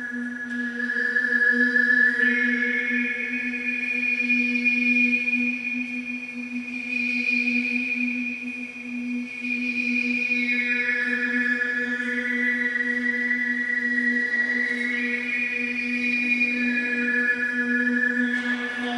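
Harmonic-chant overtone singing: male voices hold one steady low drone while a single high overtone rings out above it and steps to a new pitch several times.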